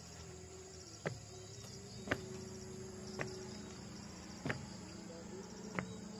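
Footsteps on wooden stairs as someone climbs them, about five knocks roughly a second apart, over a steady high-pitched insect chorus.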